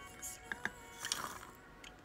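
A few light clicks and knocks of walnut pieces tipped from a plastic measuring cup into a bowl, the clearest about half a second in. Faint background music runs underneath.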